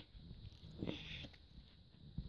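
Quiet handling of a stack of Pokémon trading cards, with a brief soft rustle about a second in.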